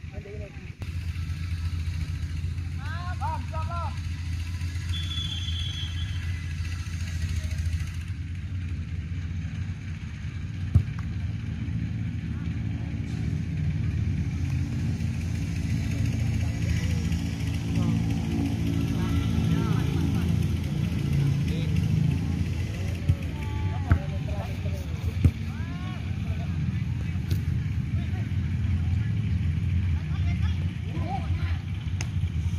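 Steady low drone of a running engine close to the microphone, with distant shouts from players on the pitch and a few sharp knocks, the loudest about eleven seconds in.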